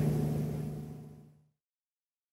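Steady drone of twin Volvo Penta D6 380 diesel sterndrive engines, fading out over about a second and a half into silence.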